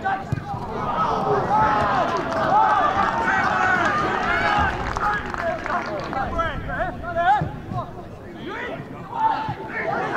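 Several men shouting at once across an open football pitch, the voices overlapping, with a few short knocks among them. The shouting drops back past the middle and picks up again near the end.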